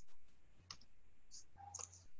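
A few faint computer-mouse clicks over quiet room hum, advancing the presentation to the next slide.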